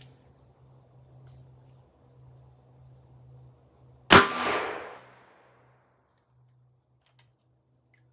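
A single shot from a Ruger GP100 revolver with a five-inch barrel, firing a standard-pressure .38 Special 125-grain Remington Golden Sabre round, about four seconds in. It is a sharp crack with about a second of echo trailing away.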